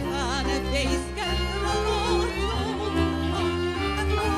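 A Hungarian nóta played by a small string band: a violin carries the melody with wide vibrato over cimbalom and a sustained double-bass line.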